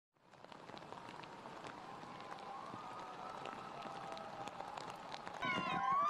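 Heavy rain falling, with many small sharp drop hits on umbrellas. Near the end a much louder sustained tone with several steady pitches comes in.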